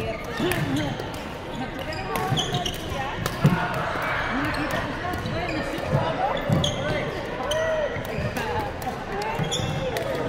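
Badminton rally on a wooden indoor court: rackets striking the shuttlecock and players' shoes squeaking and thudding on the floor, in an echoing sports hall. The sharpest, loudest hit comes about three and a half seconds in.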